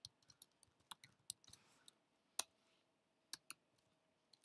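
Faint, irregular clicking of computer keyboard keys being typed, with a sharper click about two and a half seconds in and two more close together about a second later.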